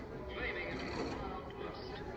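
Soundtrack of a black-and-white sci-fi film playing through cinema speakers, with a high, wavering cry about half a second in over the film's background sound.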